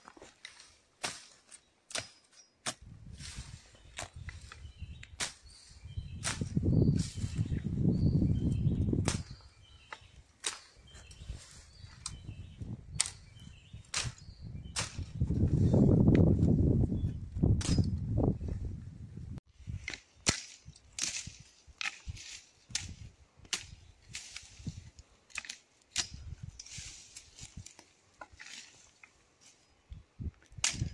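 Machete strokes chopping through dry bracken fern and brush: a running series of sharp cuts, roughly one or two a second. Twice, about a quarter of the way in and again near the middle, a deeper rushing noise swells for a few seconds.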